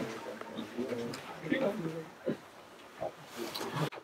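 Faint, distant voices talking in a large, echoing room, with low murmur in between; no one speaks close to the microphone.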